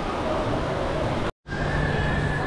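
Steady background din of a busy indoor shopping-mall atrium. It cuts out completely for a split second about a second and a half in, then returns with a steady low hum.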